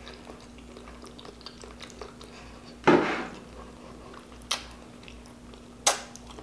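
Close-miked mouth sounds of eating braised pig feet by hand: soft, wet chewing and small smacks, with one louder mouth noise about three seconds in and sharp smacks near the middle and at the end.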